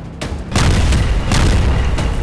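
A deep explosion boom hits about half a second in and keeps rumbling, swelling again about a second later, over dramatic background music.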